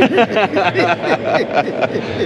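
Two men laughing together, a run of quick laughs.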